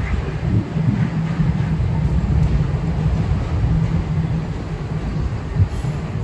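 City street traffic noise: a steady low rumble of vehicle engines, with a heavier engine hum through the middle.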